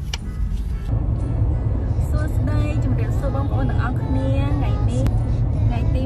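Steady low road rumble inside a moving car's cabin, coming up suddenly about a second in.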